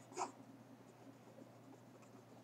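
Faint scratching of a pen writing by hand on paper, with one brief, slightly louder sound just after the start.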